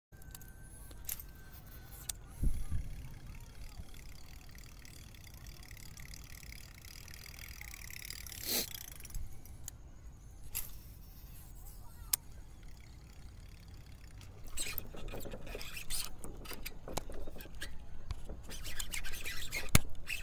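Quiet outdoor background with scattered clicks and knocks and a single swish about eight and a half seconds in, from handling a baitcasting rod and reel. The rustling and knocking grows busier in the last few seconds.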